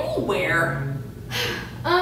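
A woman's voice making drawn-out exclamations and gasps rather than words: a falling call in the first half-second, then another rising vocal sound near the end.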